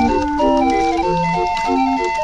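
A 20-note street organ playing a tune: a melody of sustained pipe notes over a bouncy, repeating bass-and-chord accompaniment, with one melody note held through the second half.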